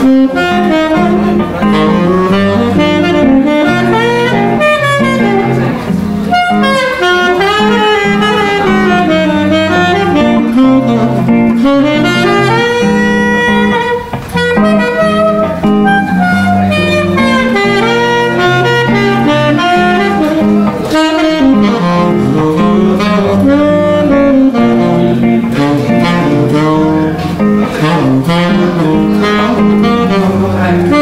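Tenor saxophone playing a jazz melody line that glides between notes, over archtop jazz guitar chords and bass notes. There is a brief dip in level about halfway through.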